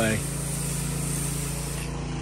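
Pressure washer spraying water onto concrete: a steady hiss of spray over the low, steady hum of the running machine.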